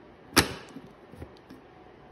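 Plastic lid of a Brita water-filter pitcher snapping into place with one sharp click about half a second in, followed by a few faint ticks.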